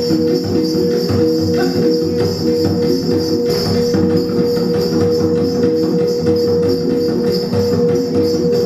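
Sikka gong-and-drum music for the Hegong dance: a set of tuned gongs ringing in a repeating interlocking pattern, one tone held steadily, over regular drum beats. Steady jingling of the dancers' ankle bells runs over it.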